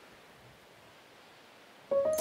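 Quiet room tone, a faint steady hiss, then a piano-like music cue begins abruptly at the very end.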